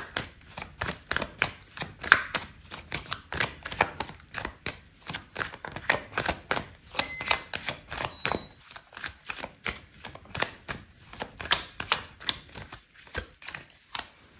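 A tarot deck being shuffled by hand: a rapid, irregular run of light card clicks and slaps, several a second, which stops about a second before the end.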